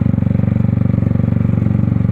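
Yamaha R15's single-cylinder engine running steadily in an even pulse as the motorcycle rolls slowly along a muddy dirt track.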